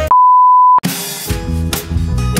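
A loud electronic beep at one steady pitch, lasting under a second, cuts off abruptly. Background music with drums comes straight in after it.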